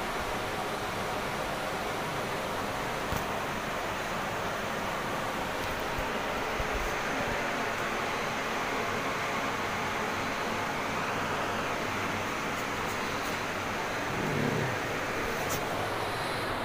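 A steady, even hiss of background noise, with a brief low murmur about fourteen seconds in.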